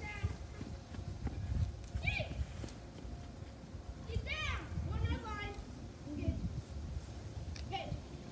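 Children shouting and calling out to each other during a game, a few short yells with pitch rising and falling (about two seconds in, around four to five seconds, and again near the end), over a steady low rumble.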